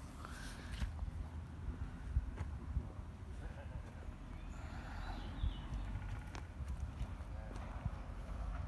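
Handling noise from a phone filming outdoors: a low rumble with scattered light knocks and rustles as the phone is moved about.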